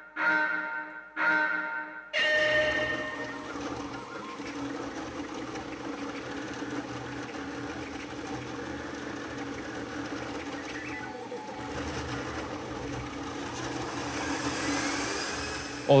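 Two short ringing chime tones, then from about two seconds in the steady running of a Voron 0.2-based CoreXY 3D printer on a high-speed Benchy print: stepper motors and fans humming, with a rising whine near the end. The printer sound is a mix of the print's own audio and an overlaid dry-run recording of the motors.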